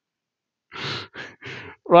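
A man laughing softly under his breath: three short, breathy exhaled bursts, starting a little under a second in.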